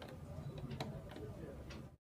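A few faint, light clicks over a low steady hum, cutting off suddenly at the very end.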